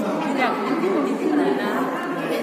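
Several people chattering at once, voices overlapping in casual talk.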